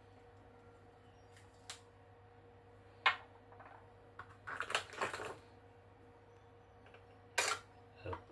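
Small clicks and clinks of copper-jacketed rifle bullets being handled at a desk: a few sharp taps, a run of light clinking about four to five seconds in as bullets are picked from a plastic box, and a sharper click near the end as the next bullet is set on the metal pan of a digital scale.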